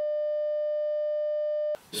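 Censor bleep: a single steady, mid-pitched electronic beep tone, about two seconds long, laid over a spoken word, that cuts off suddenly near the end.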